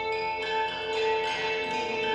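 Live experimental music from a small ensemble of trumpet, electric guitars and electronics: steady held tones with new notes sounding over them every few tenths of a second.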